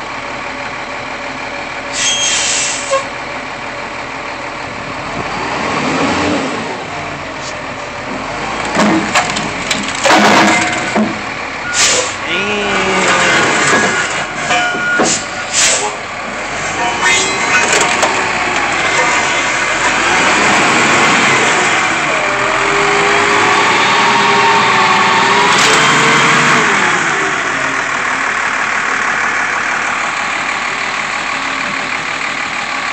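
Heavy Taylor forklift's engine running under load while its forks come down on a car amplifier, with several sharp cracks and crunches in the first half as the amp is crushed. The engine grows louder in the second half, its pitch rising and falling.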